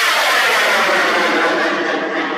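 Bang fai (Thai 3-inch pipe rocket) in flight just after launch: a loud, steady rushing hiss of the rocket motor, with a tone inside it that falls in pitch as the rocket climbs away, easing slightly near the end.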